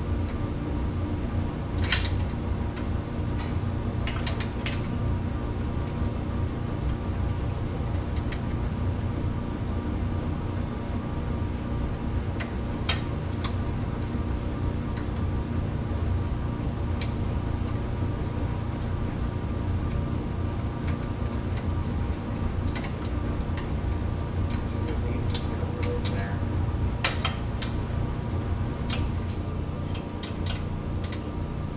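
Scattered sharp metal clinks and clicks of hand tools working the rear shock spring adjusters on a Polaris HighLifter 850, clustering near the end, over a steady low hum.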